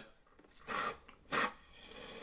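SodaStream carbonator forcing CO2 into a bottle of milk, with a hiss at each press of the button: two short hisses, then a longer one starting near the end.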